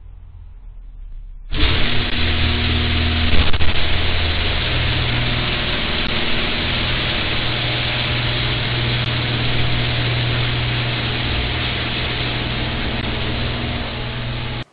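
Garage door opener and door running while the door rises, heard through the security camera's microphone: a steady mechanical noise with a low hum that starts about a second and a half in.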